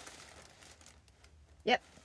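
Faint rustling from handling, fading out within the first half second, then a quiet stretch; a woman says a short 'yep' near the end.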